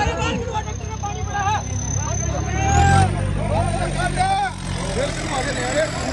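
John Deere tractor's diesel engine running under heavy load against a chained drag, revving up about three seconds in, with men in the crowd shouting over it.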